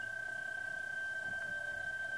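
uBITX HF receiver tuned to the 20-metre PSK31 segment in upper sideband, its speaker giving a steady, high single tone over faint band noise.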